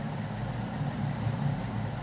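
Steady low hum with a faint hiss, unchanging and with no distinct events: the constant background noise of the recording.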